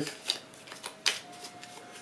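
A tarot deck being shuffled by hand: a few soft, crisp card clicks, the two clearest about a third of a second in and about a second in.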